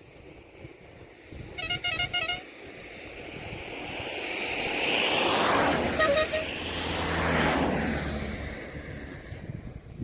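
A vehicle horn sounds in a quick run of short beeps, then a motor vehicle approaches and passes close by, its engine and tyre noise swelling and fading, with another short horn note as it goes past.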